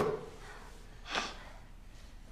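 A short thump right at the start, then a person's brief breath, a quick gasp-like intake, about a second in.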